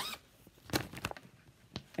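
Rustling and crinkling of a plastic mesh project bag being handled, with a few short sharp clicks.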